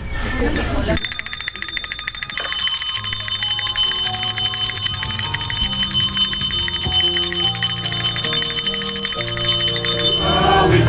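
A small bell rung rapidly and continuously, its ringing steady and high, over slow, low instrumental notes that change every second or so, the opening of hymn music.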